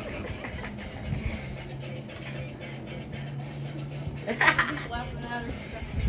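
Faint background voices and music over a steady low hum, with one brief loud vocal sound about four and a half seconds in.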